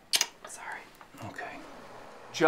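A faint whispered voice, with a short sharp sound just after the start.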